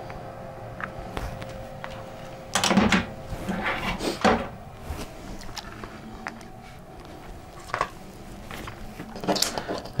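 Quiet handling sounds as hot glue is dabbed onto a small wired electronics module and the hot glue gun is set down, with two brief knocks about three and four seconds in.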